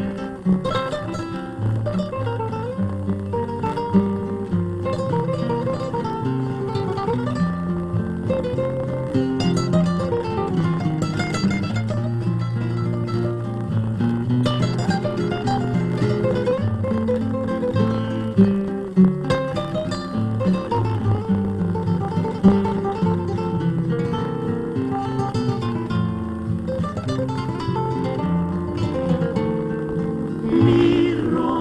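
A bolero introduction on acoustic guitars: a requinto picks the melody over the chords and bass line of two accompanying guitars, with no voices.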